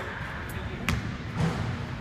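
Punches landing on a Title heavy bag: two sharp thuds a little under half a second apart, a one-two combination.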